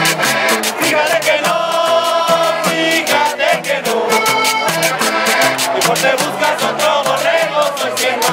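Accordion playing a lively tune in held chords over a stepping bass line, with a fast, steady percussive beat running through it.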